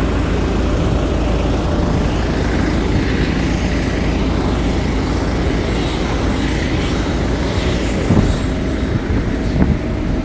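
Steady rumble and hiss of jet aircraft noise on an airport apron, with a few light knocks about eight seconds in.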